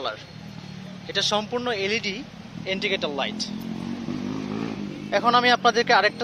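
A person talking in short phrases over the steady low hum of a Yamaha Fazer Fi V2's single-cylinder engine idling.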